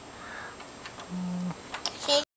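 A person's voice holding one short, steady hummed note about a second in, with a few faint clicks around it.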